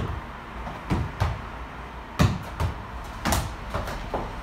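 A tennis ball bouncing on a gym floor and being kicked back and forth in a foot-tennis rally: about seven sharp thumps at uneven intervals, the loudest a little past the middle.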